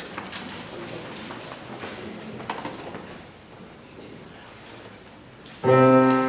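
Quiet hall with a few faint clicks and rustles, then near the end a grand piano chord struck loudly and held, its notes ringing on.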